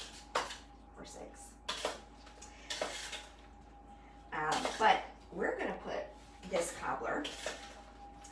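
A spoon clinking and scraping against a salad-spinner bowl as sliced strawberries are stirred, with a few separate sharp clinks in the first three seconds. Voices in the second half.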